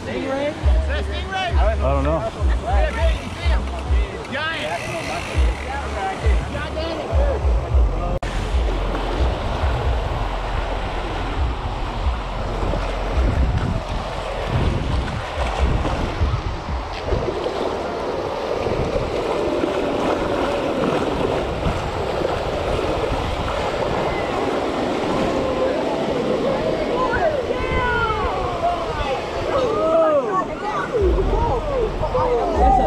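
Waves breaking in the surf with wind buffeting the microphone, mixed with background music and indistinct voices.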